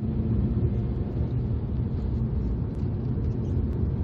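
Steady low rumble inside the cabin of a 2009 Mazda RX-8 R3 on the move: its twin-rotor Wankel engine under way together with tyre and road noise.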